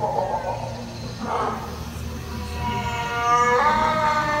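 A long, drawn-out call of a long-necked sauropod dinosaur played over a theme-park ride's sound system. It enters about halfway through as one held tone with overtones and steps up in pitch near the end, over a steady low hum.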